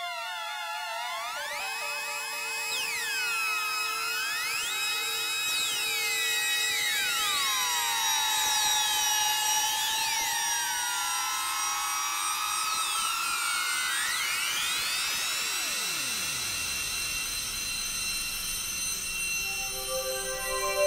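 Moog Model 15 synthesizer preset: a bright, high, sustained tone whose many overtones swoop down and back up in repeated pitch sweeps over held notes. About three-quarters of the way through, one part slides steeply down in pitch while another climbs.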